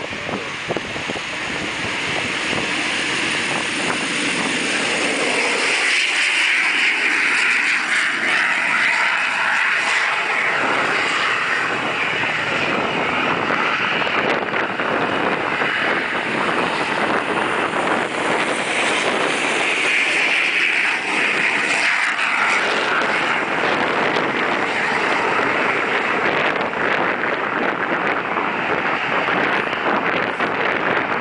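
The twin General Electric J85 turbojets of a Cessna A-37 Dragonfly running at high power on the runway. The sound grows louder over the first few seconds, then holds loud and steady, with a shrill high whine that swells twice.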